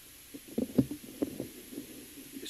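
A handful of short, muffled low thumps close together in the first half, over faint steady hiss.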